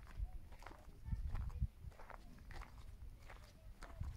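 Faint, irregular footsteps on dry dirt ground, with low rumbling noise on the microphone.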